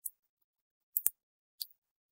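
A computer mouse clicks twice in quick succession about a second in, with a fainter tick near the end; otherwise near silence.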